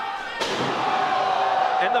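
A wrestler slammed down onto the wrestling ring's mat: one sharp, loud impact about half a second in. Crowd noise and one long held yell follow it.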